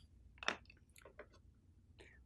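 A few faint, short clicks and light knocks of a pair of scissors and a wooden-handled paintbrush being picked up and handled on a desk. The sharpest click comes about half a second in, and smaller ones follow over the next second.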